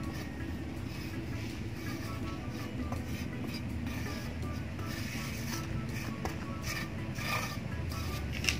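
Steady low hum of a nearby machine running, with soft scraping as a metal scraper levels soil across a styrofoam seedling tray.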